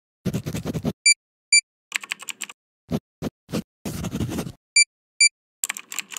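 Sound effects for an animated intro: short bursts of typing-like keystroke clatter broken by silent gaps, with two pairs of short bright pings about half a second apart, the first pair about a second in and the second near the end.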